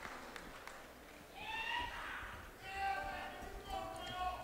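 Audience members calling and shouting encouragement toward the stage, high-pitched voices rising from about a second and a half in. A few scattered claps come before the shouts, over the murmur of the crowd.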